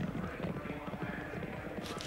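Hoofbeats of several racehorses galloping on turf as they meet a steeplechase fence: a quick, uneven patter of low thuds.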